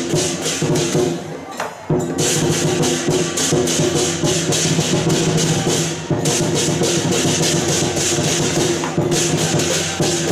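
Lion dance percussion: drum, gong and cymbals played fast and loud, with a crash-like hiss over a steady ringing low tone. The playing breaks off briefly just before two seconds in, then carries on.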